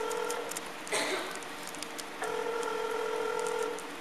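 Ringback tone of an outgoing phone call placed through a Ford SYNC in-car system, heard while the call waits to be answered. One ring ends just after the start, and after a pause of almost two seconds a second ring sounds for about a second and a half. A short noise comes about a second in.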